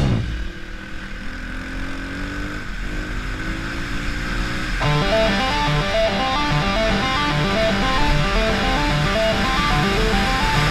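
Yamaha trail bike engine rising steadily in pitch as it accelerates. About five seconds in, rock music with electric guitar comes in over it.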